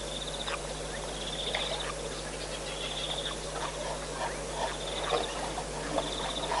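A frog calling: a short, high, rattling trill repeated about every one and a half seconds, among other scattered wildlife calls.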